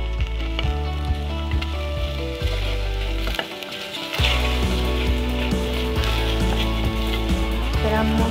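Chopped onion, leek, celery and garlic sizzling in oil in a pot as they are stirred with a wooden spoon, the start of a sofrito (refrito), with background music playing over it.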